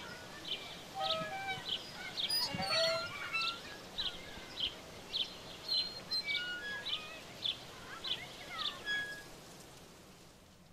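Birds singing: one bird's short, high chirp repeats about twice a second among other scattered calls, and the birdsong fades out near the end.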